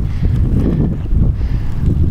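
Wind buffeting the microphone: a loud, uneven low rumble.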